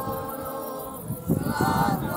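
A group of voices singing a folk song a cappella, with a low rumbling noise in the second half.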